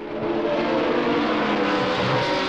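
Formula One racing car engines running at high revs: a steady drone with several engine notes sounding together.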